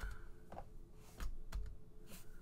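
A few faint, separate clicks of computer keys being pressed, over a faint steady hum.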